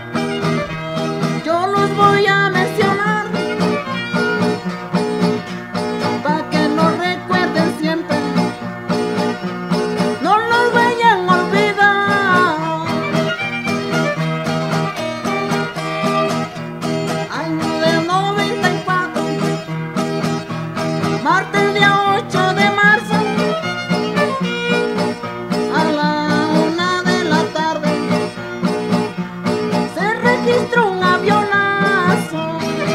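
Instrumental passage of a Oaxacan string-band corrido: a violin plays a sliding melody over a steadily strummed guitar accompaniment.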